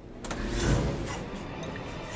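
Dramatic film-score rumble that swells in suddenly about a quarter-second in, a deep drone carrying steady tones.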